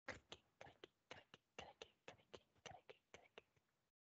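Very faint whispering: short, quick bits of hushed speech, about three or four a second.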